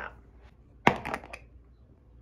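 Spin mop head popping off the handle's plastic connector: one sharp plastic snap a little under a second in, followed by a few lighter clicks.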